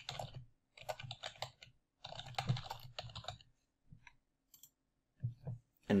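Typing on a computer keyboard: three quick runs of keystrokes, then a few separate key taps near the end.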